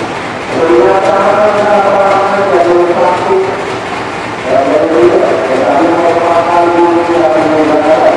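A singing voice holding long, gliding melodic notes over music, with short breaks about half a second in and around four seconds in.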